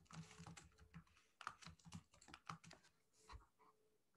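Faint computer keyboard typing: a quick, irregular run of light key clicks.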